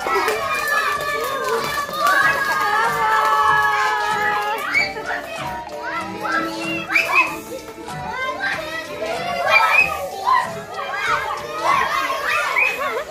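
Children's voices chattering and calling out in a room, over music with long held notes in the first four seconds or so.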